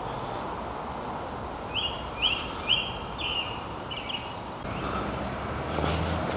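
A small bird calling a run of about five short, high chirps, roughly two a second, over a steady outdoor hum of distant traffic.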